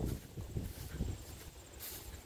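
Quiet outdoor background with an uneven low rumble of wind on the microphone.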